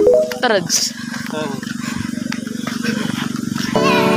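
A short gliding vocal sound near the start, then a steady low buzz with a fine even pulse for about three seconds, cut off by background music near the end.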